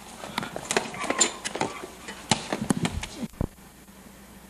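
Scattered sharp knocks and scuffs of a boy running across a paved driveway with a basketball toward a hoop. A low thump comes about three seconds in, then the camcorder recording cuts out to faint hiss.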